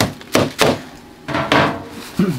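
Hard plastic egg crate knocked against a bin: three sharp knocks in quick succession, then a longer clatter about a second and a half in.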